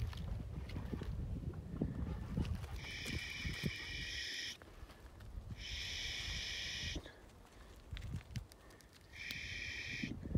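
Footsteps crunching and rustling over stony, scrubby ground, followed by three high buzzing bursts of about a second and a half each.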